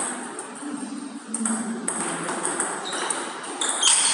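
Table tennis rally: the ball clicking sharply off the paddles and bouncing on the table, several hits over a few seconds.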